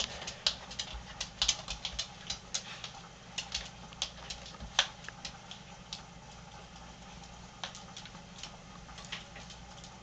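Irregular clicks and scratches of a tamandua's claws on the hardwood floor and the doorway as it digs its way into a gap, thick for about five seconds and then sparser.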